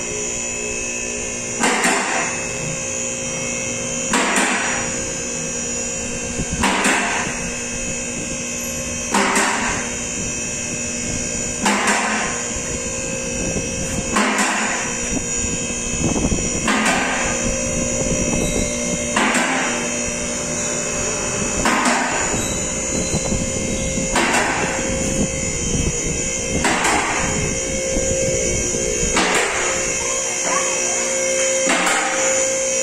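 Two-post vehicle lift raising an SUV: the electric hydraulic power unit runs with a steady hum while the carriage safety latches click sharply over each lock step, about once every two and a half seconds.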